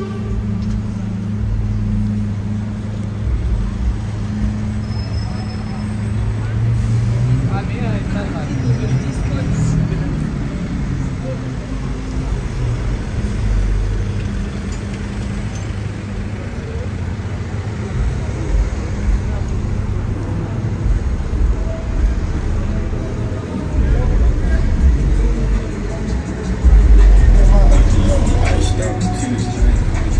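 Busy city street traffic: a steady low engine hum from buses and cabs idling and moving in slow traffic, with passers-by talking. It gets louder near the end.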